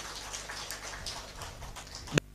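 Audience applauding: many hands clapping in a dense, even spread, fairly quiet and without a break.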